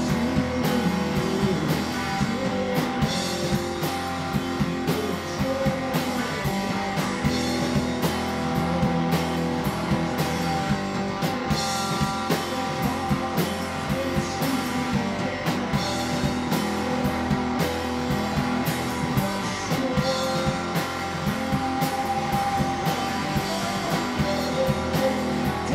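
Small rock band playing live: electric guitars and a drum kit with cymbals, drums striking steadily throughout.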